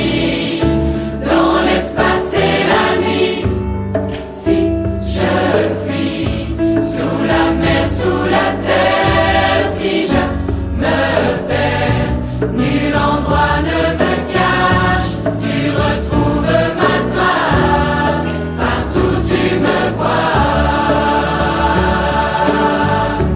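Christian worship song: voices singing in French over a steady instrumental accompaniment.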